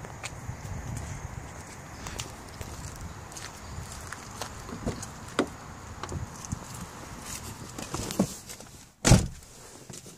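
Footsteps and handling noise with scattered light clicks, then one loud thump about nine seconds in as the door of a Dodge Neon SRT-4 is shut from inside.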